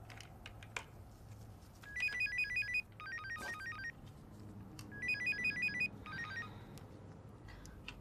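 Mobile phone ringing with an electronic ringtone: a quick melody of short beeping notes, played through twice with a short pause between, starting about two seconds in.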